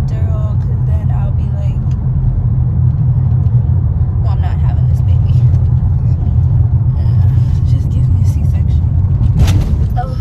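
Car on the road, heard from inside the cabin: a steady low road and engine rumble, with a brief sharp noise near the end.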